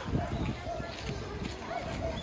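Indistinct voices of people talking at a distance, over outdoor background noise with scattered low knocks.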